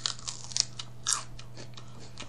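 A person biting and chewing raw celery stalk: a run of irregular, crisp crunches in the mouth, the strongest near the start and about a second in.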